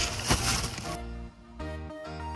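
Plastic bag crinkling and rustling as it is handled, over background music; the crinkling dies away about halfway through and the music's held notes carry on.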